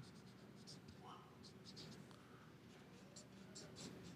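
Felt-tip marker writing on paper: faint, quick, irregular scratchy strokes of the tip across the sheet.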